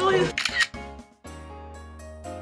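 A voice speaking briefly, then a quick burst of clicks about half a second in, followed from just over a second in by soft background music with a steady low bass note.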